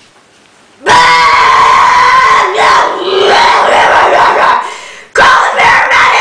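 A woman retching loudly into a toilet bowl: one long, strained heave starting about a second in, then a second one near the end.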